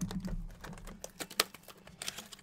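Quick small clicks and taps of cardboard card packs being handled in an open hobby box, with one sharper click about one and a half seconds in.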